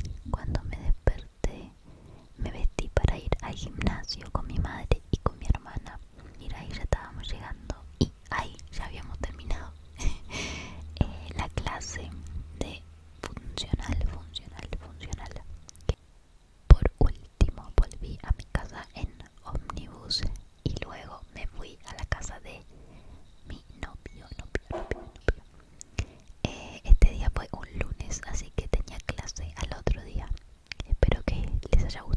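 A woman whispering close to the microphone, with many short clicks all through; a low steady hum runs beneath from about eight to sixteen seconds in.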